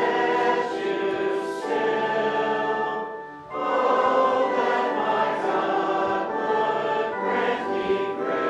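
Congregation singing a hymn in held, slowly changing notes, with a brief break for breath about three and a half seconds in.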